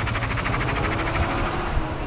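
Car engine sound effect running hard, with a fast, even rasping pulse over a steady low rumble.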